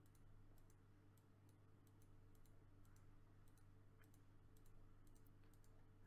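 Faint computer mouse clicks in quick succession, about two or three a second, each one placing a move on an online Go board, over a steady low electrical hum.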